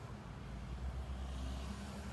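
Road traffic: a car passing, its tyre and engine noise swelling near the end over a steady low rumble.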